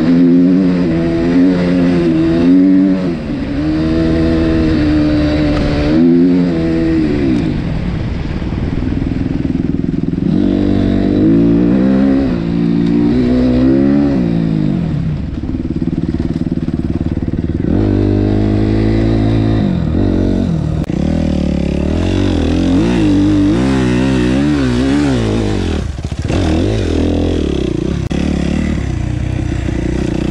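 Suzuki RM-Z 250 four-stroke single-cylinder motocross bike being ridden, heard from on board. Its engine note rises and falls again and again as the throttle is opened and closed.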